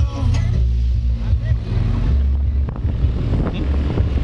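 Motorbike riding along a road, its engine running under heavy wind rumble on the microphone.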